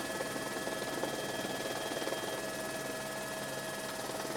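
Steady drone of the filming aircraft's engine heard inside the cabin: an even noise with a few constant tones running through it, unchanging throughout.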